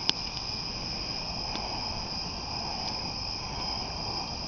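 Crickets chirping in a steady, high-pitched chorus, with a wood campfire crackling: one sharp pop just after the start and a few fainter pops later.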